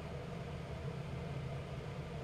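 Steady low hum of room tone with no distinct event.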